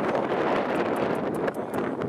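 Wind blowing across the camera's microphone: a steady rush with light crackling.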